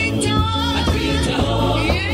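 Women's church choir singing gospel music, amplified through loudspeakers.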